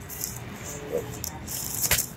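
Aluminium foil food wrapper and a plastic cutlery wrapper crinkling as they are handled, in a few short bursts, with a sharp click near the end.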